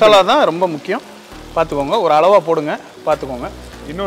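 A singing voice with music: long phrases whose pitch bends up and down in wavering ornaments, with a low hum under parts of it.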